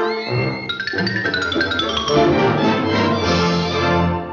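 Orchestral cartoon score playing under the opening credits: a run of high notes stepping downward, then held notes that begin to fade at the end.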